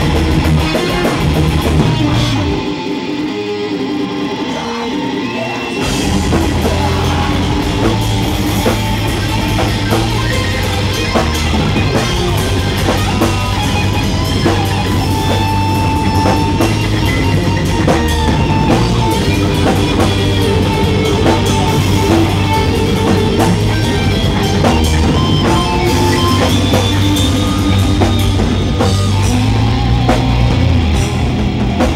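Heavy metal band playing live, with electric guitars, bass and a drum kit. About two and a half seconds in, the low end drops out for a few seconds. The full band comes back in and plays on steadily.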